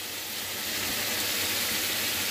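Oil and fried onions sizzling steadily in a wok as a paste is scraped into it from a cup, the sizzle growing slightly louder over the two seconds.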